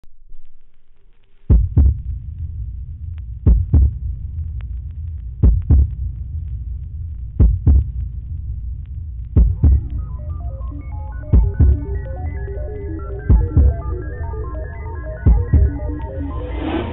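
Intro of a progressive dance-music DJ set: a low droning hum with paired bass thumps about every two seconds, and a stepping synthesizer melody coming in about ten seconds in.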